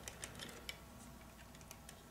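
Faint, scattered light clicks of a hard drive in its plastic tool-less bracket being handled and pressed into place in a desktop computer case, one slightly sharper click about two thirds of a second in.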